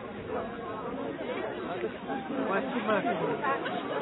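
Indistinct chatter of several people talking at once, with no clear words, growing a little livelier in the second half.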